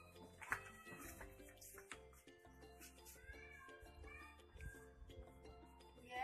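Near silence: faint steady background music or tones with a low hum, and a few faint calls that rise and fall in pitch, like an animal calling.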